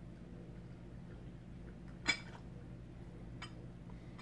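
Low steady room hum with a single sharp clink about halfway through, a ceramic pitcher knocking against a glass mug during a pour of hot water, and a fainter tap near the end.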